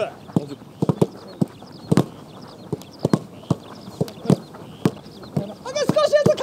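Footballs being kicked on a grass pitch in a passing drill: a run of sharp, irregular thuds, with several balls in play at once.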